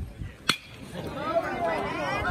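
A single sharp metallic ping of a metal baseball bat hitting a pitched ball, about half a second in. Spectators' voices rise and call out after it.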